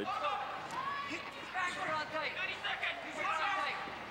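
Raised voices shouting in the arena, several at once in places, high and strained rather than conversational.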